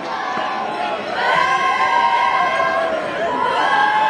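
A group of boys' voices chanting together in long, overlapping held cries, growing louder about a second in.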